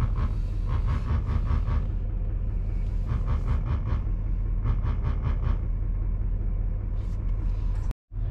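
Pickup truck's engine running at low revs while reversing, heard from inside the cab. Three bursts of rapid beeping from the rear parking sensors sound over it.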